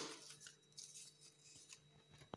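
Near silence, with a few faint soft ticks of paper strips being handled and laid on a cake.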